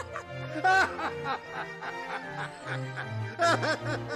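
A man and a woman laughing heartily together in repeated bursts over background music, loudest just under a second in and again about three and a half seconds in.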